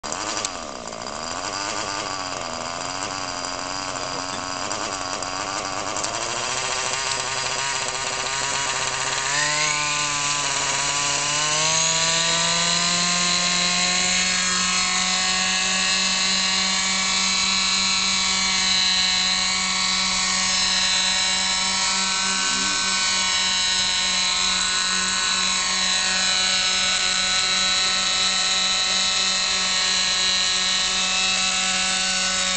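Small nitro engine of a Robbe Moskito Basic RC helicopter running, on its first run after five years unused and not yet re-tuned. Its pitch climbs as the rotor spools up, starting about a fifth of the way in, then holds at a steady high note for the rest of the time.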